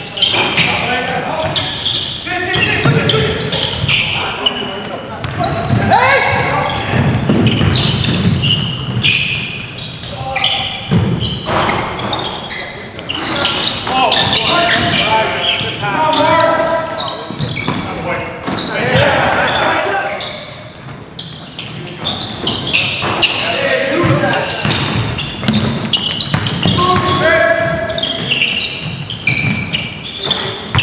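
A basketball bouncing and being dribbled on a hardwood gym floor, with players shouting to each other across a large gym.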